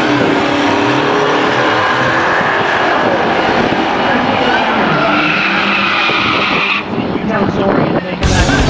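A drag car doing a burnout at the start line: engine held at high revs and tyres squealing against the track, loud and steady, with rising whines in the middle.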